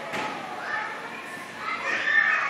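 Children's voices chattering and calling in the background of a busy indoor hall.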